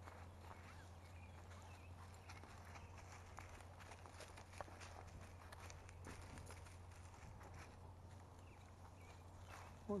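Faint, scattered footsteps and rustling through brush over a steady low hum, close to silence, with one slightly sharper snap about halfway through.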